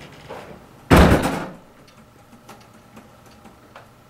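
A door slams shut about a second in: one loud hit that dies away within half a second, followed by a few faint ticks.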